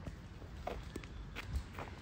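Faint footsteps on an asphalt road, a few soft steps about two-thirds of a second apart, over a low rumble.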